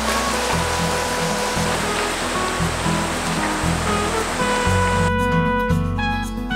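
Background music over the steady rush of a mountain stream running over rocks. The water sound drops away about five seconds in, leaving only the music.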